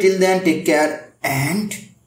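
Speech only: a man talking, breaking off briefly about a second in and then saying a few more words.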